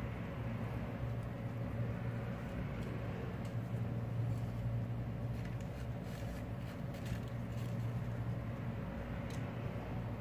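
Steady low mechanical hum with a constant hiss, like a running fan or household appliance, with a few faint light ticks in the middle and near the end.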